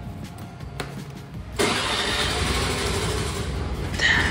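A motor scooter's small petrol engine being started with the ignition key: it catches suddenly about one and a half seconds in and then keeps running steadily.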